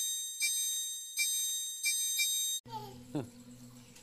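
A short bright chiming jingle over the channel logo: high ringing notes with about half a dozen struck accents. It cuts off abruptly about two and a half seconds in, leaving a low hum and a brief falling tone.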